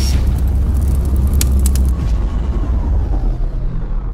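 Cinematic logo-intro sound design: a loud, deep rumbling bass drone, with a few sharp hits about a second and a half in and a faint falling tone near the end.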